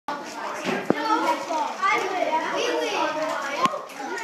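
Children chattering and talking over one another, with two sharp clicks, one about a second in and one near the end.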